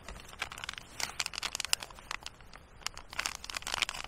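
Foil ration packets crinkling and crackling in irregular bursts as a hand rummages among them and pulls one sachet out of the box.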